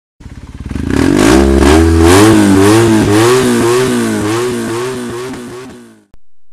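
Motorcycle engine revving, its pitch rising and falling over and over, loud, then fading away over the last couple of seconds.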